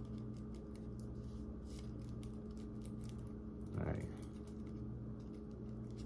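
Faint crinkling and ticking of paper being folded between the fingers to make a blunt's mouthpiece, over a steady low hum. A short mumble is heard about four seconds in.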